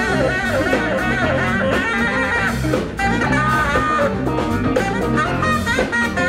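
Live band playing an instrumental passage: a saxophone takes the lead line over electric guitars, keyboard, bass and drums.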